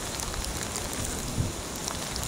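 Steady rain falling, an even hiss with no clear rhythm.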